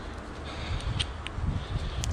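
Handling noise from a screw-lock carabiner and dog lead being worked in the hands, with a low rustle and a couple of light clicks about a second in.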